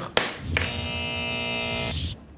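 A single sharp knock of a wooden gavel, followed by a held musical chord that sounds steadily for about a second and a half as a segment sting.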